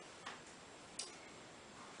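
Near silence: faint room tone in a pause, with one soft click about a second in.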